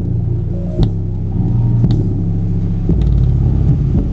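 Electronic music played loud through the 20-watt, 5.5-inch subwoofer driver of a CDR King Jargon 2.1 computer speaker system during a bass excursion test. It is mostly deep bass notes with a few sharp beats, and little treble.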